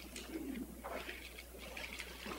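Felt-tip marker writing on a flip-chart pad: short squeaks and scratchy strokes.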